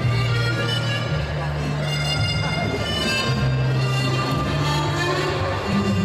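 Ballroom dance music playing over a hall sound system, with long held bass notes under layered melody.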